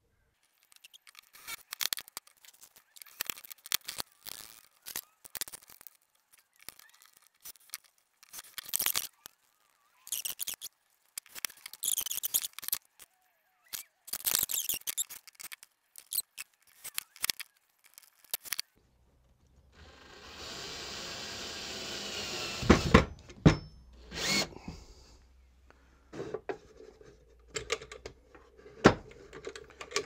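Small metal brackets and screws handled with scattered clicks and scrapes. About two-thirds of the way in, a cordless drill-driver runs for about three seconds, driving screws to fix the brackets to the side of the wooden moulding box. A few sharp knocks follow.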